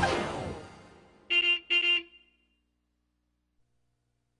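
The theme music dies away, then a horn sounds two short beeps about half a second apart: the cartoon school bus honking.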